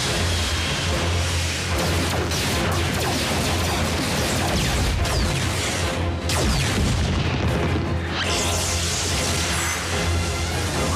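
Action-cartoon battle soundtrack: dramatic background music mixed with explosions and crashing impacts. Several falling whooshes sound around the middle.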